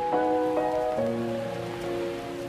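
Lofi hip hop instrumental: mellow held chords that change twice, over a steady rain-like hiss layered into the track.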